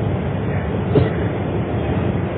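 Steady rumbling background noise with no speech, with one faint click about a second in.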